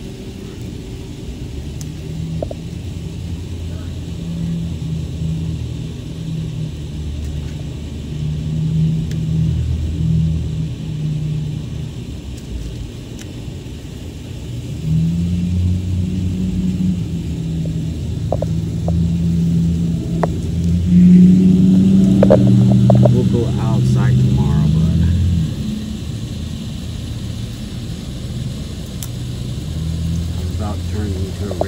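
Low rumble of a motor that rises and falls in pitch and strength, loudest about two-thirds of the way through.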